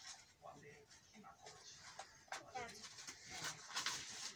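Quiet handling of a gift's packaging, with soft crinkles and a few small clicks, and a brief faint high wavering voice-like sound about halfway through.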